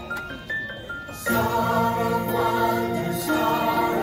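Christmas choral music: a soft melody of single stepping notes, then about a second in a choir and its instrumental backing come in loudly, holding full chords.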